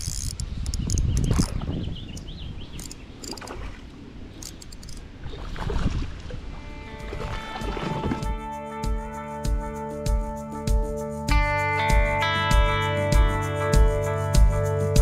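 Outdoor noise of water and wind around a kayak, with a few louder swells, then background music with a steady beat and guitar coming in about halfway through and carrying on to the end.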